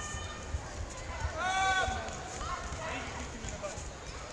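Karate sparring: scuffling feet and dull thuds on the gym floor, with one loud, high-pitched shout about a second and a half in and a weaker call a second later.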